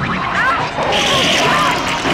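Horror-film soundtrack: a crash-like noise, with voices and music, as white goo bursts from a man's stretched mouth. Pitched sounds slide up and down through the moment.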